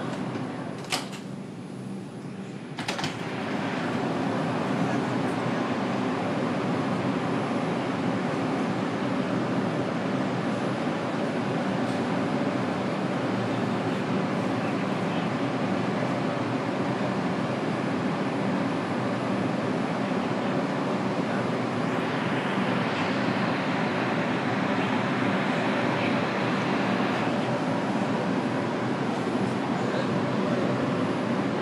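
R142 subway car doors closing with two sharp knocks, about a second and three seconds in, then the car's steady running noise as the train moves off. A brighter hiss swells for several seconds near the end.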